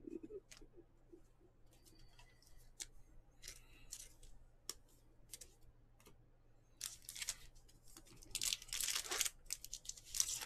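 Trading cards being handled and shuffled by hand, soft flicks and taps of cardstock. From about seven seconds in, a card pack's wrapper is crinkled and torn open in a run of louder rips.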